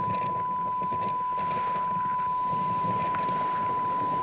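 Electronic drone from an experimental film's soundtrack: a steady high tone held on one pitch over a low, rough rumble, with no change in level.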